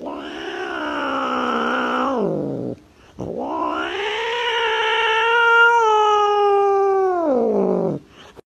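Domestic cat yowling: two long, drawn-out calls, the first about two and a half seconds, the second nearly five seconds and louder, each sliding down in pitch as it ends.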